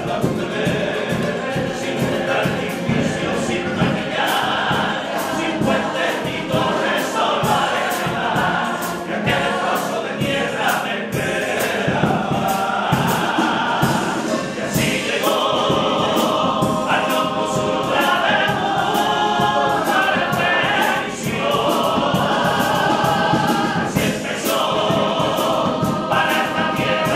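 Male choir of a Cádiz carnival comparsa singing in harmony, with guitar accompaniment and a steady percussive beat.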